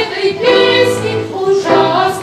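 A children's choir singing together, moving through a melody of short held notes.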